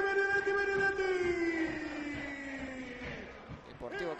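Football television commentator's drawn-out goal cry, one long held note that sinks in pitch over its last two seconds and fades out shortly before the end.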